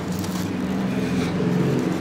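A steady low mechanical hum with a noisy hiss underneath, unchanging in pitch.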